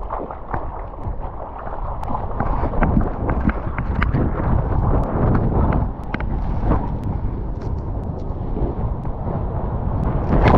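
Seawater splashing and rushing around a longboard surfboard as the surfer paddles into and rides a breaking wave, with many small splashes from hands and spray. Wind buffets the microphone.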